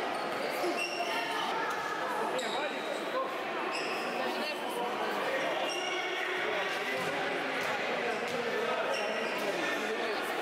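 Indoor futsal game in an echoing sports hall: the ball being kicked and bouncing on the court floor, short high squeaks of shoes on the hard floor, and players and spectators shouting.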